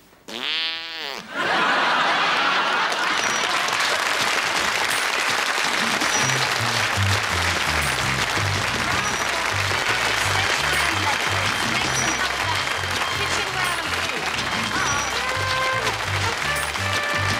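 Studio audience laughing and applauding after a brief rising-and-falling voice at the start. About six seconds in, the closing theme music comes in under the applause with a steady bass line.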